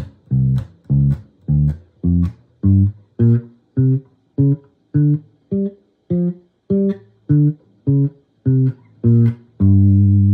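Electric bass guitar, fingerstyle, playing the G blues scale one note at a time in a single hand position, about two evenly spaced notes a second moving up and back down in pitch. The last note is held and rings out near the end.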